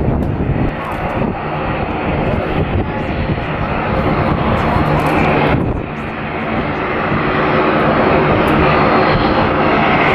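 Fokker 50 turboprop airliner's two engines running, a steady propeller drone with an engine hum as the aircraft rolls and taxis. The sound dips briefly a little past halfway, then grows louder toward the end as the aircraft comes nearer.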